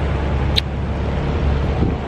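Street traffic noise: a steady low rumble of motor vehicles close by, with one brief high chirp about half a second in.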